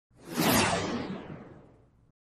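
Whoosh transition sound effect: a rushing sweep that swells in quickly, is loudest about half a second in, then fades away while its pitch falls, dying out near the end.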